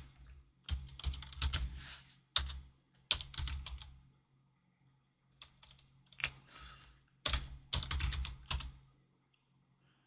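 Computer keyboard being typed in several short bursts of keystrokes with pauses between them, over a faint steady low hum.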